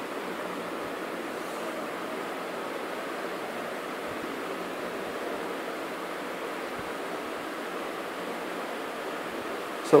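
Steady background hiss of room tone, even throughout, with no distinct events.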